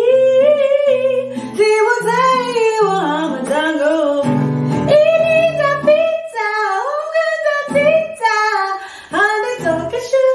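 A woman singing while accompanying herself on a nylon-string classical guitar, her voice gliding between sustained notes over plucked chords.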